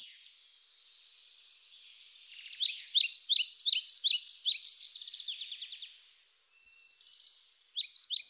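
Birds chirping: a rapid run of short, high, downward-sliding notes that sets in about two and a half seconds in and fades away near the end, over a faint high hiss.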